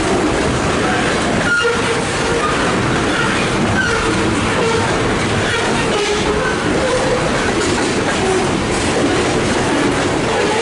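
Covered hopper cars of a freight train rolling steadily past at close range, a continuous rumble and clatter of wheels on rail, with short wavering squeals from the wheels coming and going.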